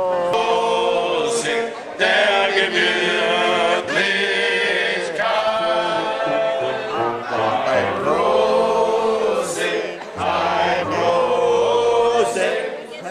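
A crowd singing together in long, held phrases, with instrumental backing underneath.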